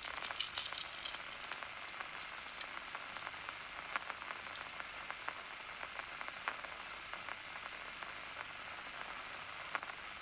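Steady hiss with scattered faint clicks and crackles.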